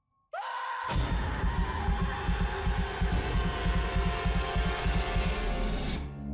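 Horror-trailer sound design, cinematic stinger and build. After a moment of silence a sudden loud hit with a short falling sweep comes in, then a rapid low pulsing under a dense wall of noise and held tones, and its high end dies away near the end.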